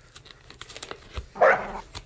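Golden retriever puppy chewing a cardboard box, the cardboard giving scattered clicks and crackles under its teeth, with one short bark about one and a half seconds in.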